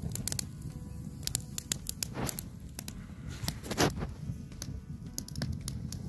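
Small campfire of twigs and sticks crackling, with many sharp, irregular pops and a few louder snaps, the loudest about four seconds in, over a low steady rumble.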